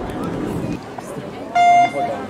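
A single short electronic start beep, one steady tone lasting about a third of a second, about one and a half seconds in: the start signal for an inline speed-skating sprint heat. Before it there is a low murmur of crowd and rink ambience.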